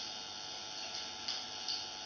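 Room tone: a steady hiss with a low electrical hum, and a couple of faint ticks in the second half.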